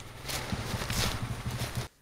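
Enduro motorcycle engine idling, a low, uneven rumble under wind and rustle noise on the helmet microphone, cut off abruptly near the end.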